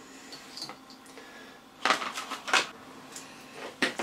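Small steel parts clicking and rattling as they are handled and picked from a plastic parts tub. A quick cluster of sharp clicks comes about two seconds in, and a single click comes just before the end.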